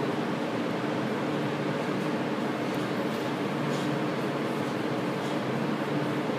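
Steady hum of fans running, an even whir with a faint low tone underneath.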